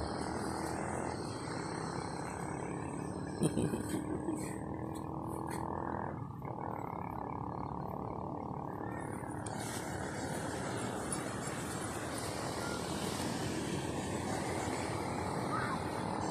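Steady rushing outdoor background noise, with a brief louder sound about three and a half seconds in.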